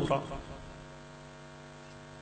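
Steady electrical hum from the public-address sound system, a low tone with a stack of even overtones, left after the voice trails off at the start.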